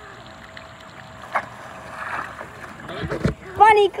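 Quiet outdoor background with wind on the microphone and a low buffet about three seconds in, then a child's high-pitched shouting near the end.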